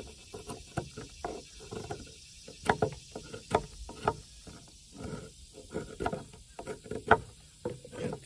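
Knife blade shaving bark off a natural wooden slingshot fork in short, uneven scraping strokes, a few sharper ones standing out in the middle and near the end.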